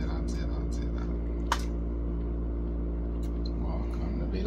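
Plastic clicks from a small DJI folding drone being handled as its arms are unfolded, with one sharp click about a second and a half in, over a steady low hum.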